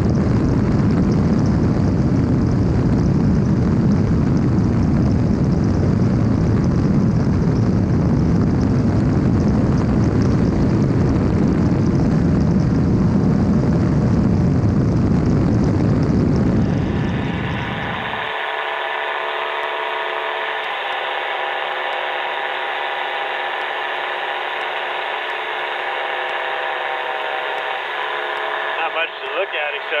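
Ultralight trike in flight: a loud, steady rush of wind with engine and propeller noise, which about two-thirds of the way in switches abruptly to a thinner, tinnier steady engine drone with a hum of several held tones, as heard over a headset intercom. A voice comes in at the very end.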